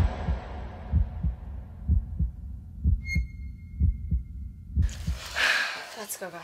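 Heartbeat sound effect: low double thumps about once a second, with a thin steady high tone for a couple of seconds midway and a burst of hiss near the end.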